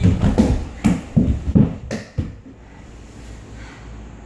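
Dull thumps and scuffs of a body rolling across a bare concrete floor, a quick series of about eight knocks over the first two seconds.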